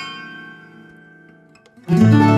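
Instrumental acoustic music on plucked string instruments: a chord rings and slowly dies away, then a new, louder chord is struck near the end.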